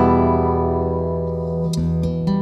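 Ortega BWSM/2 nylon-string classical guitar amplified through its piezo pickup with a microphone blended in. A chord rings out and slowly fades, and a few new notes are plucked near the end. The mic blend makes it sound a little more 3D.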